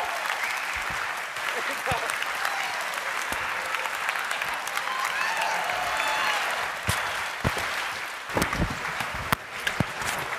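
Audience applauding, with voices in the crowd calling out over it; after about seven seconds the clapping thins out into scattered individual claps.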